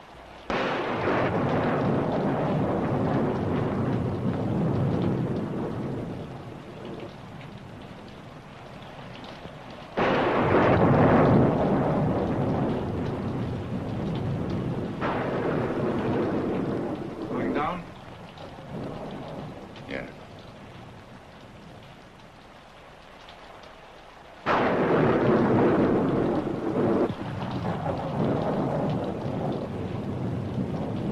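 Thunderstorm: three loud claps of thunder that break in suddenly, about half a second, ten seconds and twenty-four seconds in, each rumbling away over several seconds, with rain in between.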